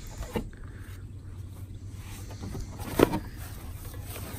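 Low wind and handling rumble on an outdoor phone microphone, with a small click just after the start and one sharp knock about three seconds in.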